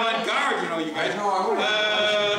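Loud, overlapping voices of people talking and calling out, with one voice held long near the end.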